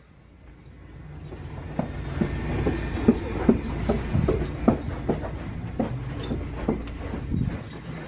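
Footsteps, about two a second, over a low rumble from a handheld camera being carried.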